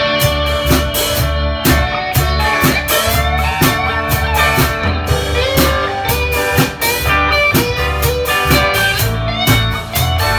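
Band music led by an electric guitar, played with bent notes over a steady bass line and a drum beat.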